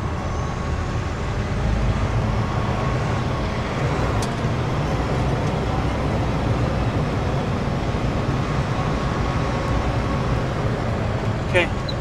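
A semi truck's diesel engine running, with tyre and road noise, heard from inside the cab as the truck rolls slowly. The low engine noise holds steady throughout.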